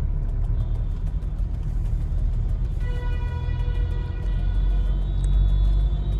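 Low, steady rumble of road and engine noise inside a moving car's cabin. A faint, steady pitched tone sounds for about two seconds around the middle.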